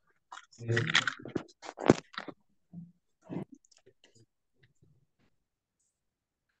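Headphones and microphone being handled during a swap over a video call: a sharp click about two seconds in, then scattered small clicks and rustles, after a brief spoken "¿Sí?".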